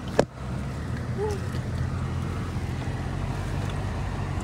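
Steady low rumble of a car driving slowly on a rough dirt road, heard from inside the cabin, with one sharp knock just after the start.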